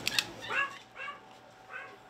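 Small dog whining: three short high whines over about a second and a half, with a sharp click near the start.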